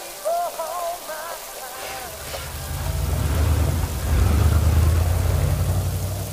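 Steady rain, with a deep rumble of thunder swelling in about halfway through and growing louder. A few short wavering tones sound over it in the first two seconds.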